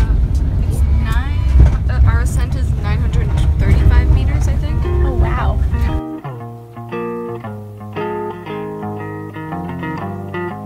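Low rumble of a moving vehicle's cabin with voices and music over it; about six seconds in this cuts off suddenly and only background music is left, plucked guitar notes over a bass line.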